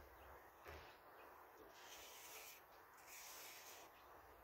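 Near silence: faint outdoor background hiss, with a few soft high swishes around the middle.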